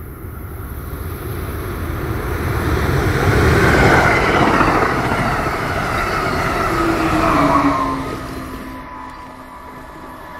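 Amtrak Keystone push-pull train passing at close to 100 mph, a cab car leading and an electric locomotive pushing at the rear: a rush of wheel and air noise builds to a peak about four seconds in. A second swell follows as the locomotive goes by, with a whine that drops in pitch, then the sound fades as the train recedes.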